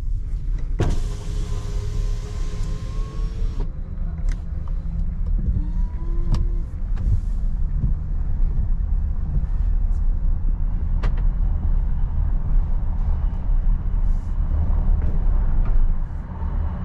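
Volkswagen ID. Buzz Cargo electric van rolling slowly over cobblestones, heard inside the cabin as a steady, uneven low rumble from the tyres and suspension. About a second in, a hissing electric whir runs for about three seconds and cuts off suddenly, and a few light clicks follow.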